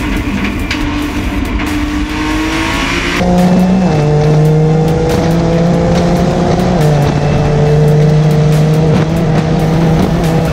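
Twin-turbo V6 of a heavily modified, 1100 hp Nissan GT-R at full throttle on a hillclimb run, heard onboard. Its note climbs steadily and drops back at gear changes about four and seven seconds in.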